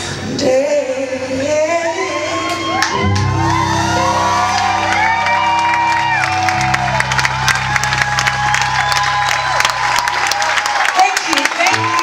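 Live band music: a woman sings with bending, forceful notes over stage piano, bass, drums and electric guitar. Held low bass notes come in about three seconds in, and the drums and cymbals get busier in the second half.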